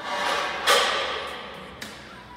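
Loaded barbell dropped from overhead onto a rubber gym floor: a loud crash about two-thirds of a second in that dies away over roughly a second. Background music plays throughout.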